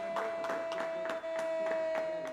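A small group of people clapping in quick, uneven applause, over a long, high, held "goool" cry from a television football commentator celebrating a goal.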